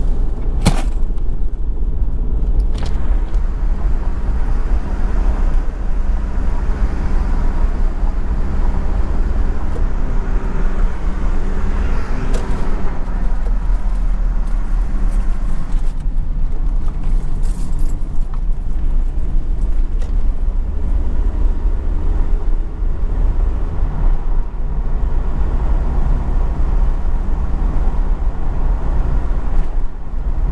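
Taxi driving along a road: steady engine hum and tyre noise throughout, with a couple of clicks near the start and a swell of road noise about twelve seconds in.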